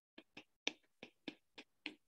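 Faint clicks of a stylus tip tapping on a tablet's glass screen during handwriting, about seven short irregular taps, the loudest a little over half a second in.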